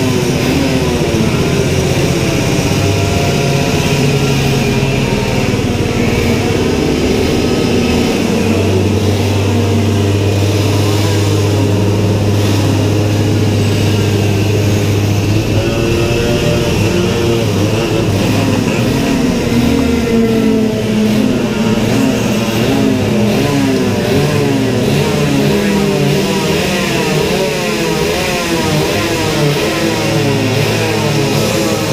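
Several go-kart engines running together at close range, their pitches wavering and overlapping as they idle and rev; one holds a steady low note for several seconds from about eight seconds in.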